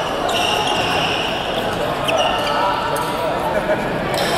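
Badminton hall ambience between rallies: sports shoes squeaking on the court floor in a few short high squeals, over a steady background of voices in a large echoing hall.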